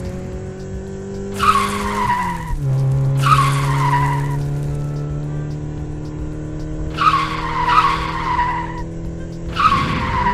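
Dubbed car tyre-screech sound effects: four squeals, each about a second long and falling slightly in pitch. Under them runs a steady hum that drops in pitch about two and a half seconds in.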